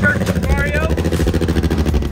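A drag-racing car's engine idling loudly close by, with a fast, even pulsing from the exhaust. A person's voice is heard briefly about half a second in.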